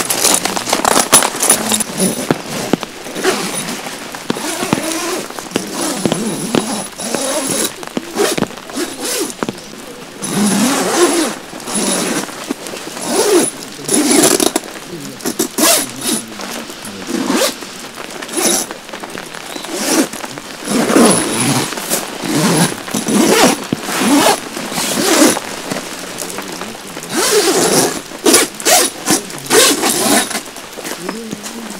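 Tent zippers being pulled and the heavy tent fabric rustling as the inner panels of a Dometic Hub air shelter tent are zipped and fitted. It comes as a string of short, irregular zipping and rustling bursts.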